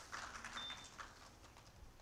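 Faint, scattered applause from a small audience, thinning out and stopping about a second in.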